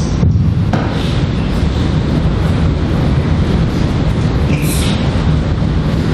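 Loud, steady rumbling noise with hiss, unbroken throughout, with no clear speech in it.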